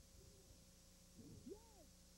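Near silence: a faint steady hum, with a few faint rising-and-falling calls past the middle.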